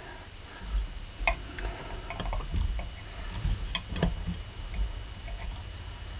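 A few light metallic clicks and taps as a dial test indicator and its stand are handled and set against the hot cap, the sharpest about a second in and again about four seconds in, over a low steady rumble.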